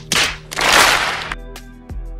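A noisy swish sound effect, about a second long, over steady background music.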